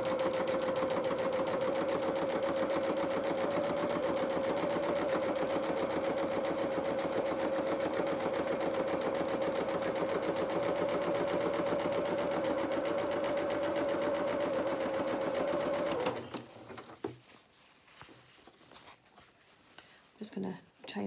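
Domestic electric sewing machine running steadily at speed, sewing a zigzag stitch along a fabric edge, with an even hum over a rapid stitching rhythm. It stops suddenly about four-fifths of the way through, leaving only a few faint clicks.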